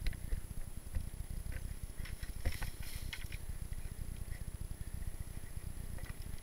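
Mountain bike rolling over a dirt trail: a steady low rumble of tyres and frame vibration through the mounted camera, with a cluster of rattling clicks about two and a half to three seconds in.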